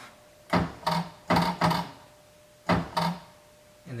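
Bi-xenon solenoid in a Tesla Model S xenon headlight projector, fed from a 12-volt bench supply, clicking on and off. There are six sharp clicks, each with a short low buzz, coming in three pairs.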